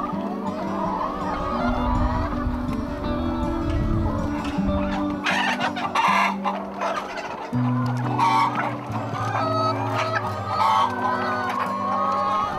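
A flock of brown laying hens clucking, with background music of sustained low notes underneath.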